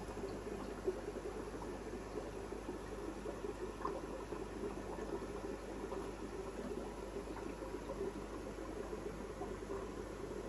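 Steady bubbling and trickling of air-driven aquarium filtration, with a faint low hum underneath.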